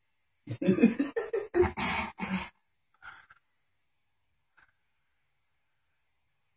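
A man clearing his throat and laughing, a run of short, choppy bursts lasting about two seconds, followed by two faint short sounds.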